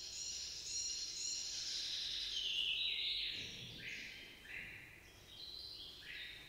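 Slowed-down recording of marsh warbler song played back from a laptop: first a dense high chatter, then short repeated notes about two a second that step up and down in pitch.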